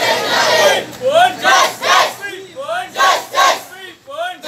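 A crowd of schoolchildren chanting protest slogans in unison: loud, rhythmic shouts, about two a second, in repeated groups.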